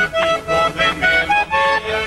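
Diatonic button accordion playing a lively vallenato melody: a steady run of short, bright notes in an even rhythm.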